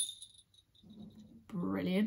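Small jingle bells on a handheld bell shaker ringing and dying away in the first half-second, followed by a short pause and then a woman speaking.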